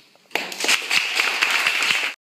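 Small audience applauding: dense clapping breaks out suddenly a moment in and keeps going.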